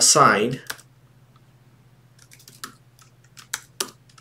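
Computer keyboard being typed on: a string of separate, unevenly spaced key clicks starting about a second in.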